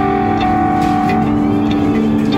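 Background music: a plucked guitar piece with held tones.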